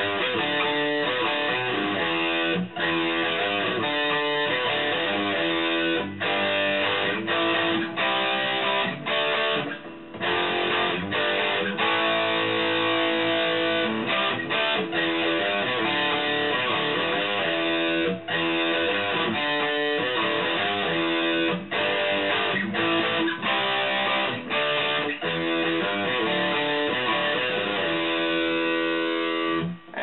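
Electric guitar played with a pointed 1.5 mm V-Picks Switchblade pick: a continuous run of fast picked notes and chords, broken by brief pauses every few seconds.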